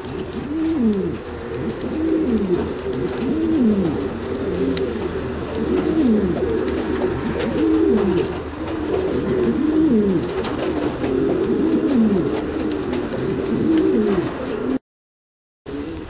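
Laudino Sevillano pouter pigeons cooing without pause: repeated deep falling coos, often overlapping, typical of a displaying male's courtship cooing. The sound cuts out for under a second near the end, then the cooing resumes.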